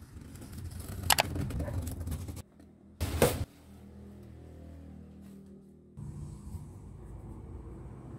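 Faint handling sounds of a flat-pack desk being unboxed: a few knocks and rustles from the cardboard box and the wooden top and metal frame, the loudest about three seconds in, over a low steady room hum.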